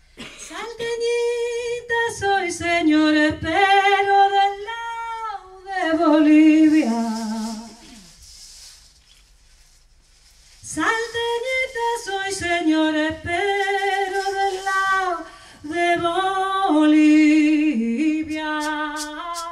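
A woman's voice singing unaccompanied: long held notes with vibrato, stepping from pitch to pitch, in two phrases with a pause of about two seconds between them.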